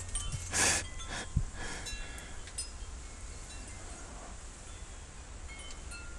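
Faint tinkling of chimes, scattered short high-pitched tones over a low steady hum, after a breathy exhale about half a second in.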